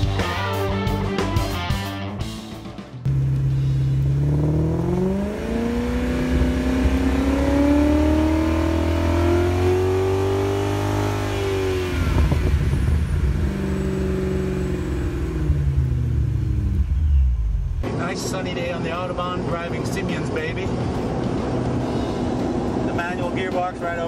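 Supercharged BMW M62 V8 of a 1997 BMW 740iL revved at a standstill at the exhaust tips. The revs climb slowly, hold high for a few seconds, then fall back toward idle.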